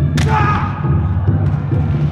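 Wooden practice board snapping under a flying kick: one sharp crack just after the start, followed briefly by a voice.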